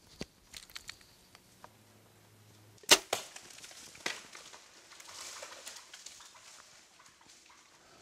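Compound bow shot: a single sharp crack as the string is released, about three seconds in, followed about a second later by a softer knock.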